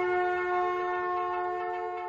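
Conch shells (shankh) blown by several priests together in one long, steady held note that slowly fades toward the end.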